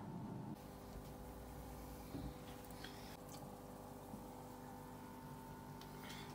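Faint steady hum of an aquarium filter pump, with light water sounds and a couple of soft clicks a little after two seconds in and near three seconds.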